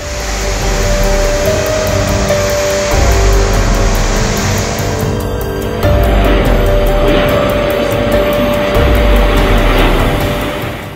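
Storm wind and heavy rain: a loud rushing noise with low buffeting on the microphone, under background music holding steady tones. The noise changes character abruptly about five seconds in.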